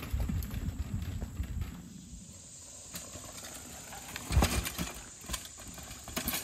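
Mountain bike rolling over a dirt trail and wooden logs: a low rumble with scattered knocks for the first two seconds, then quieter, with a loud clatter about four and a half seconds in.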